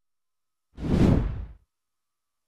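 A single whoosh transition sound effect about three-quarters of a second in, swelling and fading away within about a second.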